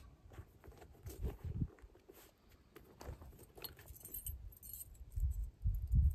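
Small metallic clicks and light rattles from a .45 caliber flintlock rifle's lock being handled after a misfire, with a few low handling thumps.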